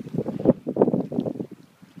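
Wind buffeting the microphone in uneven gusts, easing off near the end.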